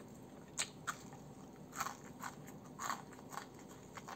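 Crispy battered crust of ayam geprek (Indonesian crushed fried chicken) crunching and crackling as it is torn apart by hand and bitten, in about half a dozen separate sharp crunches.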